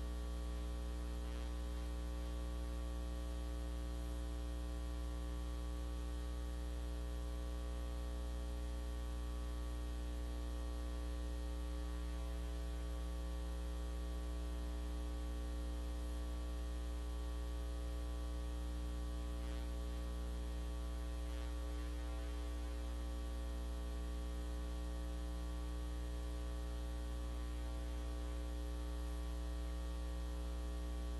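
Steady electrical mains hum carried on the audio feed, a strong low tone with a long ladder of overtones, unchanging throughout.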